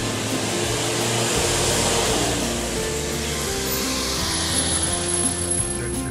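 Street traffic passing: a rushing noise that swells over the first couple of seconds and then eases, with quiet guitar background music underneath.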